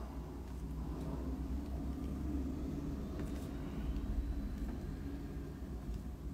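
A low steady rumble that swells a little through the middle, with a few faint taps of a white pen dabbing dots onto paper.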